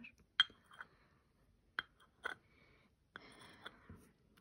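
Porcelain coffee cup and saucer clinking lightly, a few small separate chinks, as the saucer is handled off the cup and set down.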